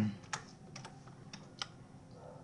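Computer keyboard key presses: a few short, separate clicks spaced irregularly, as a short name is typed into a text field.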